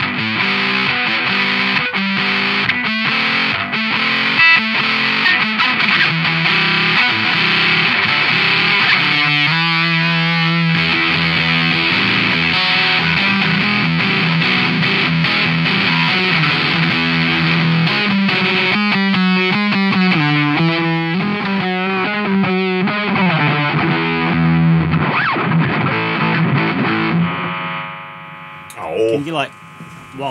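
Electric guitar played through a Doomsday Effects Cosmic Critter Fuzz pedal with both its boost and fuzz engaged: heavily fuzzed chords and single-note riffs, the tone shifting as the pedal's tone knob is swept. The fuzzed playing dies away near the end.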